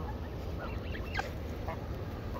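Canada geese feeding and giving a few faint, short calls, the clearest a little past halfway, over a steady low rumble.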